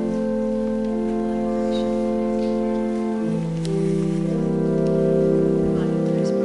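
Organ playing slow, sustained chords that shift to new notes about three and four seconds in.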